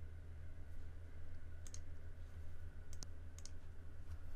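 A few sharp computer mouse clicks, two of them in quick succession about three seconds in, over a faint, steady low hum.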